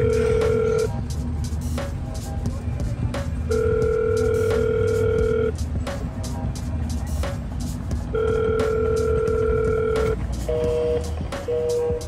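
Hikvision video intercom door station calling out after its button is pressed: a steady ring tone about two seconds long, repeated three times at even intervals, then a few short two-note beeps near the end.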